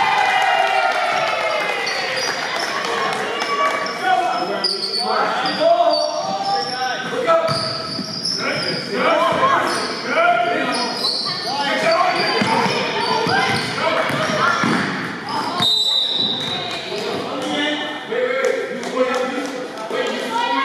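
Indoor basketball game: a ball bouncing on the gym floor amid shouting voices of players and spectators, echoing in a large hall.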